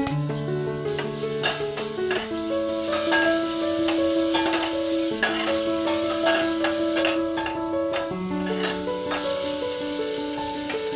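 Boneless chicken pieces frying and sizzling in a stainless steel pot, with a steel ladle clicking and scraping against the pot as they are stirred. Background music of slow held notes plays throughout.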